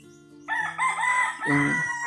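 A rooster crowing once, starting about half a second in: a few short notes, then a long held note that falls away at the end.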